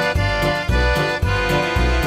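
Live folk trio playing: a Monarch piano accordion carries a held, reedy melody over a steady bass beat about three times a second, with banjo and mandolin picking along.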